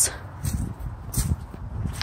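Footsteps crunching on gravel, a few strokes about half a second apart, over a low rumble of phone handling as the camera is carried.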